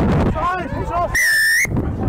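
A referee's whistle gives one short, shrill blast a little over a second in, stopping play for an infringement at the ruck. Spectators shout just before it.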